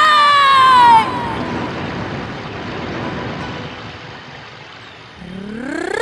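A singer's long held high note slides down and breaks off about a second in. A wash of crowd noise follows and slowly fades, and near the end a voice sweeps sharply upward into the next phrase.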